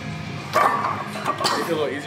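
A man's loud grunts and strained shouts while pressing a heavy barbell in a floor press, the first coming suddenly about half a second in and another a little after the middle, over background music.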